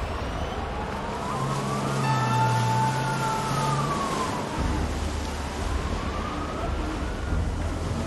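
A siren wailing slowly up and down, two long rising-and-falling sweeps, over the steady rush of breaking surf.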